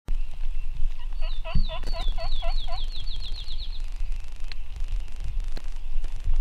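Turkey yelping: a run of about a dozen short notes, each sliding down in pitch, coming faster toward the end before it stops near the middle.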